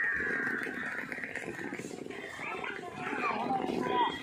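Indistinct voices of people talking, with a high, drawn-out falling call at the start and shifting, wavering voices near the end.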